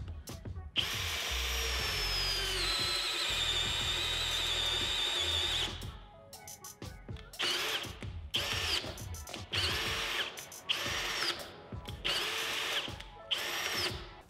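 Bosch 18V compact cordless drill/driver in low-speed, high-torque mode, boring a one-inch Nail Strike wood-boring bit through nail-embedded lumber. The motor whine runs steadily for about five seconds and drops in pitch a couple of seconds in as the bit loads up. Then it comes in a string of short bursts as the drill keeps cutting out under the load.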